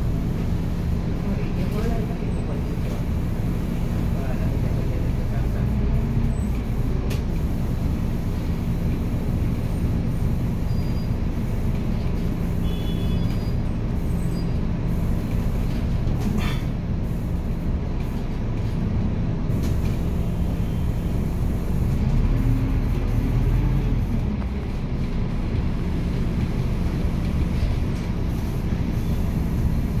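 Interior of a city bus in slow traffic: a steady low drone of the bus's drivetrain and road noise, swelling briefly about two-thirds of the way in, with a few short clicks.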